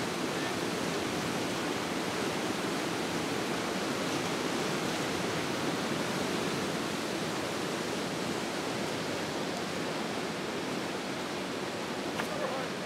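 Whitewater river rapids rushing steadily.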